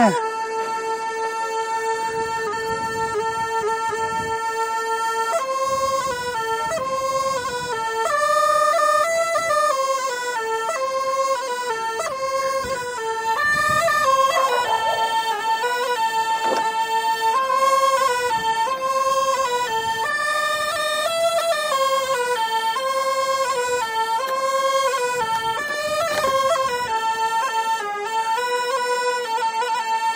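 Qiang flute, a small bamboo double-pipe flute, playing a melody in one unbroken stream with no pause for breath. It opens on a long held note, moves up and down between a few notes, and settles on a long held note near the end.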